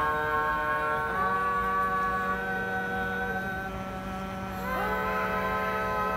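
A four-part a cappella barbershop quartet of boys' and men's voices holds long sustained chords on open vowels, singing no clear words. The chord thins out a little past the middle, and a new chord slides in from below near the end.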